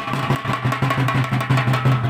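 Fast, even drumming on a double-headed drum, many strokes a second, with a faint steady tone running above the beat.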